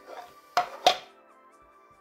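Two sharp plastic clacks about a third of a second apart as a Qiyi Ancient Coin Cube, a corner-twisting puzzle, is handled and turned to scramble it; the second clack is louder. Steady background music plays underneath.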